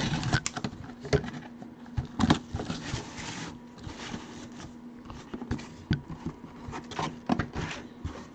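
Cardboard box being opened by gloved hands: flaps rubbing and scraping, with scattered taps and clicks and a longer stretch of scraping about two seconds in.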